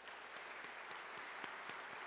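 Audience applauding, a steady patter of many hands clapping that builds up in the first half second.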